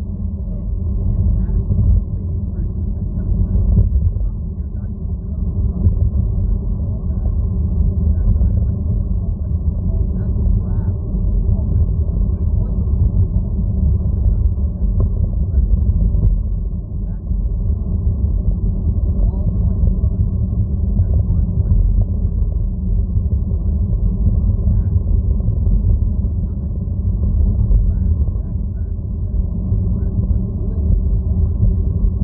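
A steady, loud low rumble with no clear words over it.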